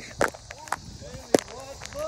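Footsteps of a person moving quickly on the ground: three sharp thumps about half a second apart, with faint voices between them and a steady high-pitched hiss of insects throughout.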